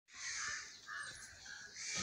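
Crow cawing, a few hoarse calls in quick succession.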